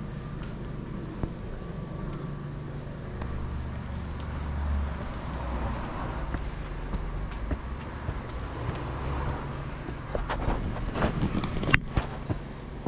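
A car passing on a nearby road, its low rumble swelling and fading about four to five seconds in. Footsteps climb stone steps, with a burst of sharper scuffs and clicks near the end.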